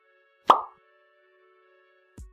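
A single short pop sound effect about half a second in, dropping quickly in pitch, over soft sustained background music.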